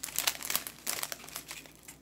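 Small clear plastic bags of diamond painting drills crinkling as they are picked up and handled. There is a quick run of crinkles that thins out in the second half.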